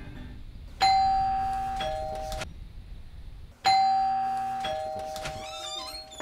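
Doorbell chime rung twice, about three seconds apart: each ring is a ding-dong, a high note followed a second later by a lower note. The first ring cuts off suddenly; the second fades out.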